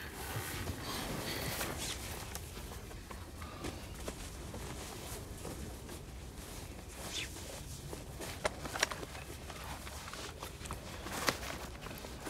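Steady low rumble inside a moving car's cabin, with a few sharp clicks and taps scattered through it.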